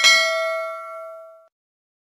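Notification-bell sound effect from a subscribe animation: a single bright ding that rings and fades away within about a second and a half.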